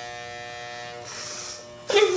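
Electric hair clippers running with a steady buzz while cutting hair. A hiss joins the buzz about halfway through.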